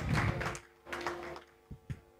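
An audience getting up from its seats: two short bursts of rustling and shuffling, then two short knocks near the end.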